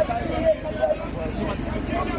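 Several people's voices talking and calling out over the steady low running noise of a vehicle.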